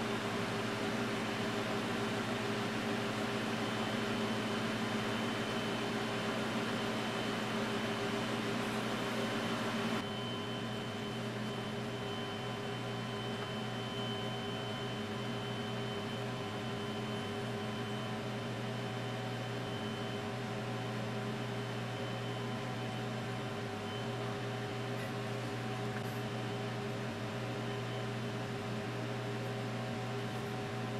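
Room heater running: a steady hum with an airy rush. About ten seconds in the rush drops and a quieter steady hum carries on.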